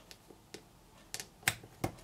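A few light, sharp clicks and taps of fingernails and small cardstock panels on a card box base as the panels are laid and pressed into place, the loudest about one and a half seconds in.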